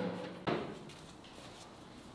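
A single sharp clunk about half a second in, fading quickly, then quiet workshop room tone.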